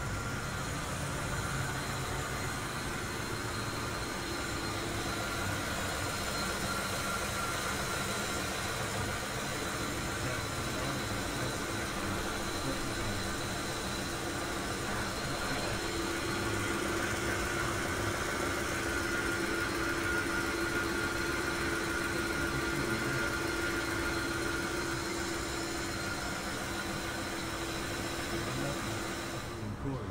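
Car engine idling steadily, with a steady whine running over it that grows stronger about halfway through.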